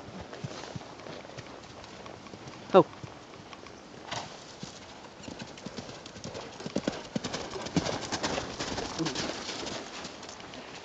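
Horse hooves on sand, the footfalls louder and more frequent in the second half as a horse moves close. About three seconds in, a person gives one short, loud shout.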